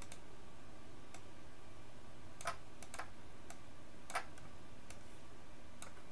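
Computer mouse clicking as files are selected and dragged: about ten sharp, irregular clicks, with two louder ones a little before the middle and about two-thirds through, over a steady low hiss of room noise.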